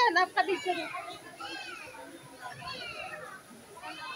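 Voices of people, with a burst of talk at the start and then several high, rising-and-falling calls like children calling out.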